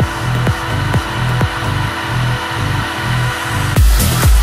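Progressive house music: a steady four-on-the-floor kick about twice a second over a pulsing bassline. Near the end a heavier deep bass and bright hi-hats come in as the track opens into a fuller section.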